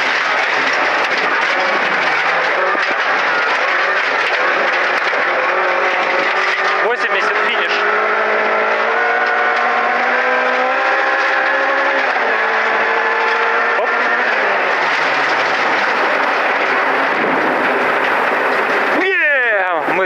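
Lada Samara (VAZ 2108) rally car's four-cylinder engine driven hard, heard inside the cabin over loud road noise; the engine note climbs and drops back at gear changes, then falls away about three-quarters through. The sound cuts off abruptly about a second before the end.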